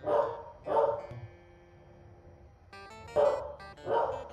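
A corgi barking: two short barks at the start and two more about three seconds in, with background music between them.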